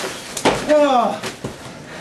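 A sharp thump in a wrestling ring about half a second in, followed by a short shouted voice that falls in pitch, then a few lighter knocks.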